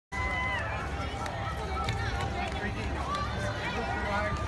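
Outdoor crowd chatter: many people talking at once, with no one voice standing out, over a steady low rumble.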